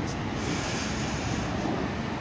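Road traffic going round a large city roundabout: a steady rush of car engines and tyres.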